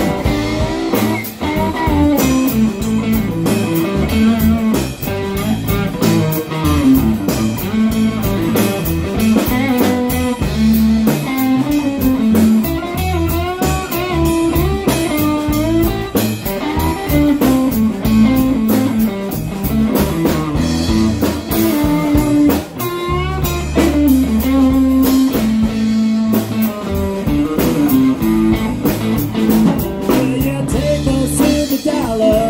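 Live blues-rock band playing an instrumental break: an electric guitar plays a lead line with wavering, bent notes over electric bass and a drum kit keeping a steady beat.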